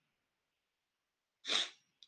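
Dead silence on the call audio, then about one and a half seconds in, a single short, hissy breath sound from the presenter, such as a quick sniff or a stifled sneeze.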